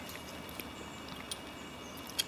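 Quiet room hiss with a few faint small clicks of a steel tension wrench being worked into a padlock's keyway.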